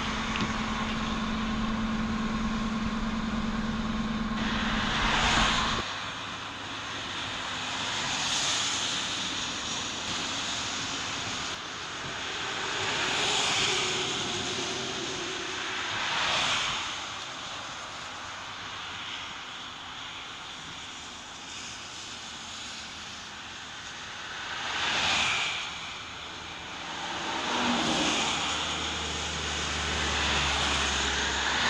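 Road and tyre noise of a car driving at highway speed. A steady low hum runs for the first few seconds, then about six whooshes rise and fade as vehicles pass close by.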